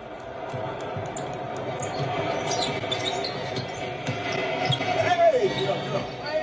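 Live basketball court sound: a ball bouncing on the hardwood and many short high sneaker squeaks over steady arena noise.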